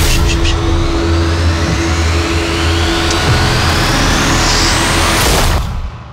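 Film-trailer sound design: a low held drone with a thin rising sweep that climbs steadily over about five seconds, swelling into a whoosh and cutting off suddenly near the end.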